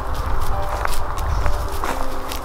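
Footsteps of a person walking briskly along a woodland path, crunching on leaf litter and twigs, over a low rumble.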